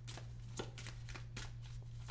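A deck of tarot cards being shuffled by hand: a run of faint, irregular card clicks and riffles, over a steady low hum.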